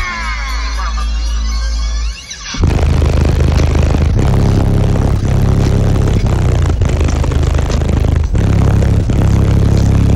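Loud bass-heavy music played through a custom car audio system with a wall of subwoofers and speakers, the deep bass strongest. After a short dip about two seconds in, a louder, fuller beat kicks in.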